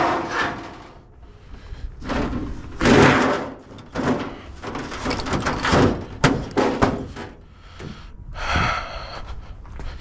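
Sheets of scrap copper being shifted and pulled out of a pickup truck bed: scraping and knocks of metal at intervals, the loudest about three seconds in.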